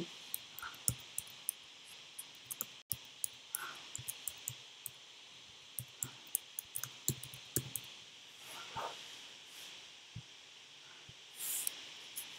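Computer keyboard keys clicking in an irregular run of keystrokes as a short name is typed, followed by a few scattered clicks.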